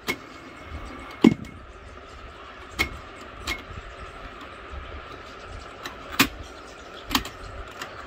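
Piano-key transport buttons of a Uher SG 561 Royal reel-to-reel tape recorder being pressed and released, giving sharp mechanical clicks and clunks at irregular intervals, the loudest about a second in. A faint steady hum runs underneath.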